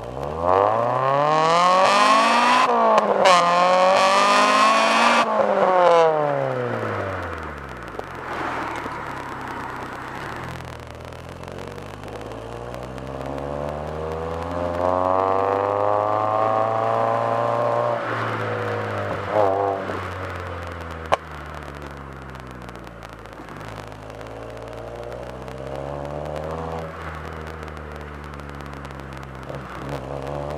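Honda Integra Type R four-cylinder engine heard at its titanium exhaust tip, revved sharply twice in quick succession and then falling back to idle. It follows with a slower rise and fall in revs and a few lighter blips of the throttle.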